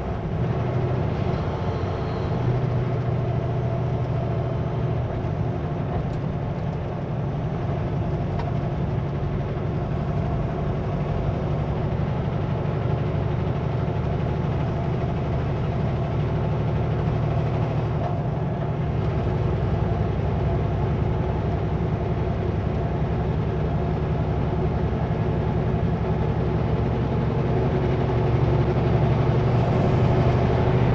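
Kenworth W900L semi truck's diesel engine running steadily while driving, with road noise, getting a little louder near the end.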